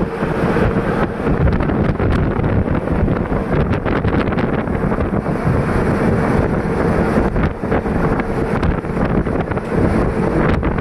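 Wind rushing over the microphone of a camera carried in a moving vehicle, a loud steady rumble with road noise under it.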